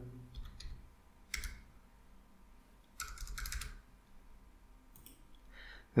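Computer keyboard keystrokes, quiet and sparse: a few single key presses, then a quick run of several keys about three seconds in, and a couple more presses near the end.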